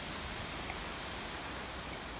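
Steady wind noise on the microphone on an exposed mountain top: an even hiss with a low rumble underneath, no separate events.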